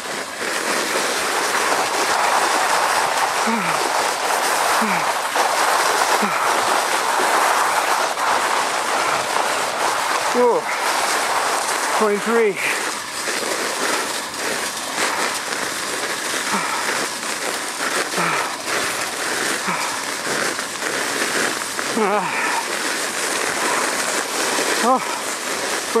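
Sled runners hissing and scraping steadily over packed snow during a fast downhill ride.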